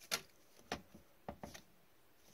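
Hockey trading cards handled in gloved hands, flipped one behind another: four faint, short card snaps, roughly half a second apart.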